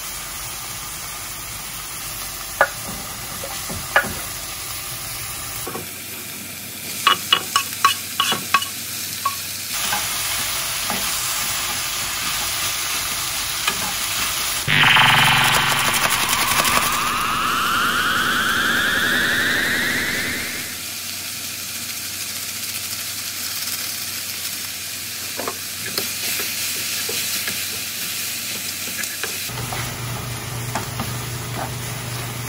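Vegetables sizzling as they fry in a stainless steel frying pan, with a wooden spatula stirring and knocking against the pan in scattered clicks and a quick run of them. About halfway the sizzling suddenly gets louder as more vegetables go into the hot pan, with a rising whine over it for a few seconds.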